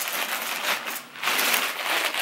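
A shopping bag rustling and crinkling as it is handled, in two spells with a short lull about a second in.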